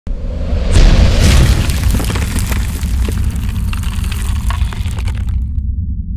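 Cinematic logo-reveal sound effect: a deep boom about a second in, then a low rumble laced with crackling that stops shortly before the end, leaving only the rumble.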